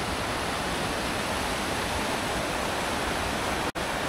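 Mountain stream rushing over rocks, a steady, even water noise. It breaks off for an instant near the end, then carries on.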